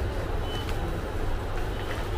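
Steady low background rumble, with a brief high-pitched beep about half a second in.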